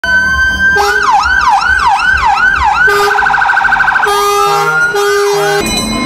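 Electronic siren cycling through its patterns: a held tone, then about five quick falling-and-rising sweeps, a fast warble, a slow rising glide and two more sweeps. It cuts off suddenly near the end.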